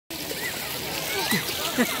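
Swimming pool water splashing and sloshing around swimmers, with short voices and a laugh near the end.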